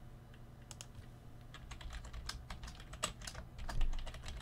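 Computer keyboard being typed on: a run of quick, irregular keystrokes that starts about a second in.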